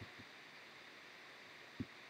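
Near silence: faint steady recording hiss, with one brief soft low thump near the end.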